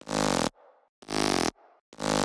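Serum synth bass layer (a one-voice saw wave with a hum-noise layer, Hyper retrigger and tube distortion) playing two short, buzzy notes about half a second each, a second apart; it is the layer that accentuates the bass pitch bends in the track.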